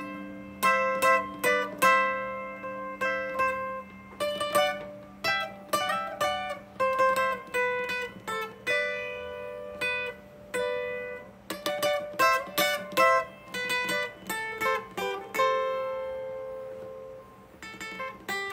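Twelve-string acoustic guitar picked in a slow melodic line of single notes and short runs, each note ringing with a bright doubled-string shimmer over low open strings ringing steadily underneath. A longer held note rings out near the end.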